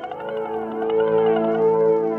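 Live electronic music: a held synthesizer drone chord whose upper tones sweep up and down repeatedly in a siren-like way, swelling louder about a second in.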